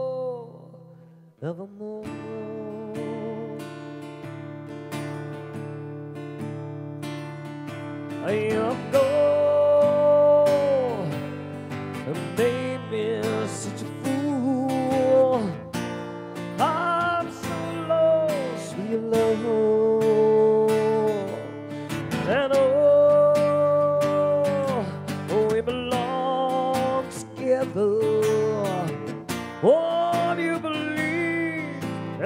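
A man singing to his own strummed acoustic guitar. After a short break about a second in, the guitar carries on, and it gets louder from about eight seconds in with long held sung notes.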